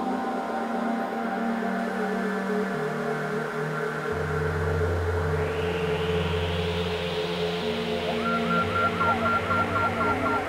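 Eurorack modular synthesizer playing an ambient drone: sustained low tones that step to new pitches, with a hissing swell rising in the middle. From about eight seconds in, a fast glitchy pattern of short repeating chirps, about four a second, joins it.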